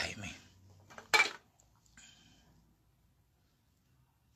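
A man's "ay" exclamation trailing off. About a second in comes a short, sharp, loud burst that is the loudest sound, then a fainter one near two seconds, then near quiet.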